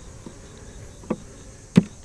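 Honey bees buzzing faintly and steadily around an opened beehive. Two short clicks sound, one about a second in and a louder one near the end.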